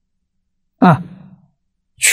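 A man's voice: one short vocal sound falling in pitch, about a second in, between pauses in a lecture.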